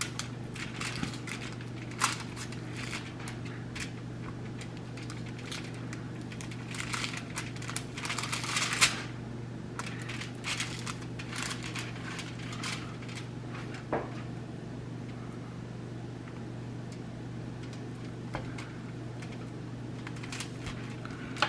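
Knife scraping and clicking against aluminium foil and a metal baking sheet, with foil crinkling, as the blade is worked under the membrane on the back of a rack of pork ribs. The crinkling and scraping thicken a few seconds before the middle, with single sharp clicks near the start and about two-thirds of the way through, all over a steady low hum.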